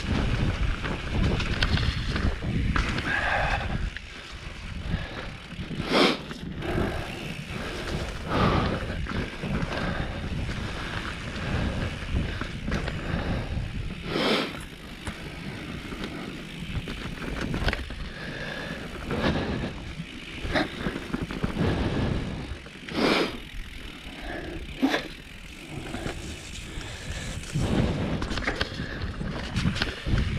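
Mountain bike rolling fast down a dirt singletrack: a continuous rough rumble of tyres on dirt and wind on the microphone, with several sharp knocks as the bike jolts over bumps.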